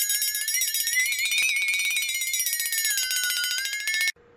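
A loud ringing sound effect, pulsing rapidly like an alarm bell, its pitch rising a little and then sinking; it cuts off suddenly at the end.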